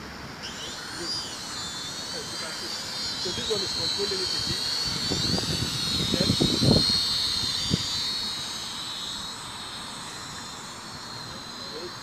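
Small toy quadcopter's electric motors and propellers whining at a high pitch that wavers up and down as it flies. The whine grows louder toward the middle and fades near the end.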